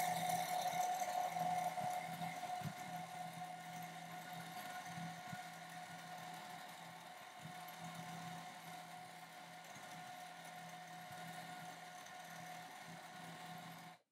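Juki home sewing machine running steadily while free-motion quilting, its motor whine holding one pitch under the rapid stitching of the needle. It is a little louder in the first seconds, then settles.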